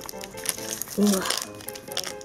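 Plastic piping bag crinkling in the hands as it is squeezed to press out clay, with scattered small crackles.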